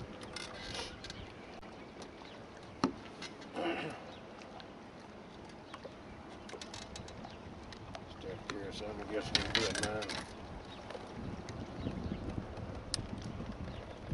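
Steady open-air background hiss on a small fishing boat on a lake, with a sharp knock about three seconds in and short stretches of indistinct talk.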